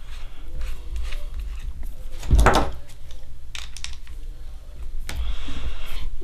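Small metal paintball-gun regulator parts being handled and screwed back together by hand: quiet clicks and rubbing, with one louder thump about two and a half seconds in.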